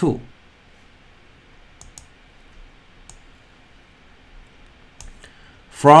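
Faint computer mouse clicks over low background hiss: a quick double click about two seconds in, then two single clicks.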